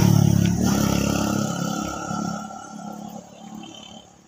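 A motor vehicle's engine going past, loudest at the start and fading away over the next few seconds.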